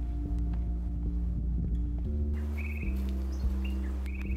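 Background music of low held notes that change step by step every half second or so. In the second half, short bird chirps sound a few times over it.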